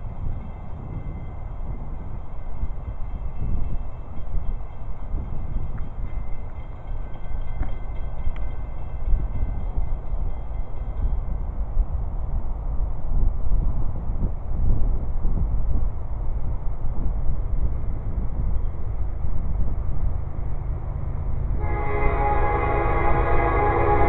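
An approaching train's low rumble, gradually growing louder. A multi-note train horn starts to sound just before the end.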